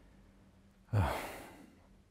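A man's audible sigh before speaking: one breath out about a second in, starting sharply and fading away.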